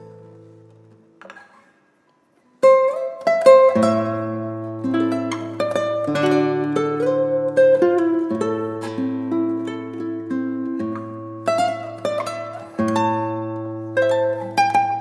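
Nylon-string classical guitar played fingerstyle: the last chord fades out, a short silent pause follows, and about two and a half seconds in the playing starts again with a strong attack, carrying on as a melody over held bass notes.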